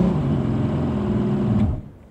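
Starter cranking the Mercury V6 OptiMax 200 jet-drive outboard with the control in neutral, a rapid steady mechanical churn that stops abruptly after under two seconds.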